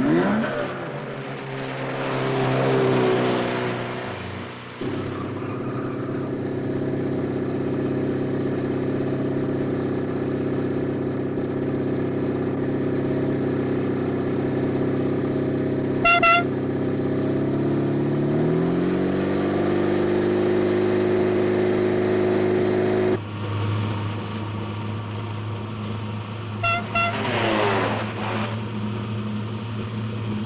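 A car engine running, rising in pitch about two-thirds of the way through as it accelerates. Short car-horn toots sound once in the middle and a few times near the end.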